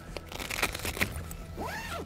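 Crackling rustle of the brolly's stiff waterproof fabric as the door panel is handled, with scattered small clicks and a brief rising-and-falling tone near the end.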